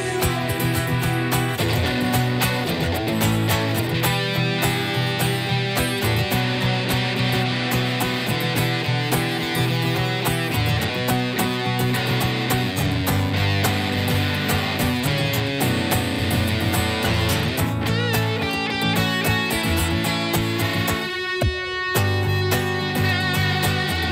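Live duo music: electric guitar playing lead over a strummed acoustic guitar, without vocals.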